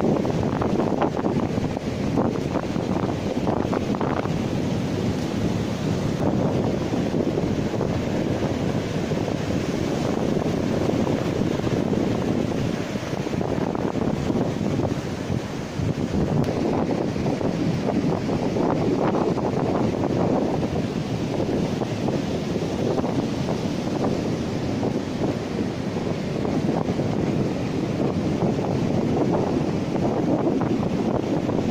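Sea surf breaking and washing up the beach in a steady roar, with wind buffeting the microphone.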